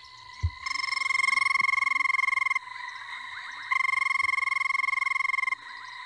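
Recorded call of a banded rubber frog played through a phone's speaker: two long, steady whirring trills of about two seconds each. A short thump comes just before the first trill.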